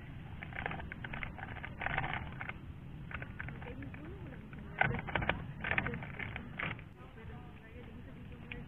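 Voices talking quietly, with the crinkle of a plastic instant-coffee sachet as coffee is shaken out of it into a ceramic mug. The crackles come in short clusters, the loudest about five seconds in.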